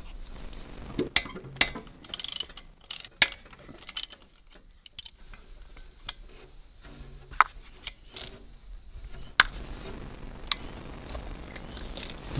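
Hand socket ratchet clicking as the bolts holding a diesel fuel shutoff solenoid are turned out: short runs of quick clicks with pauses between, then scattered single clicks.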